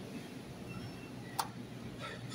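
Faint, steady background hum of a supermarket aisle, with one short sharp click about a second and a half in.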